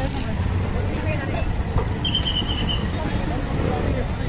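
Street traffic noise: a steady low rumble of vehicle engines with indistinct voices mixed in, and a short high-pitched tone about two seconds in.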